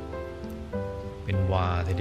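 Soft ambient background music of long sustained notes that shift chord every half second or so, over a steady hiss; a voice speaks a few words in Thai near the end.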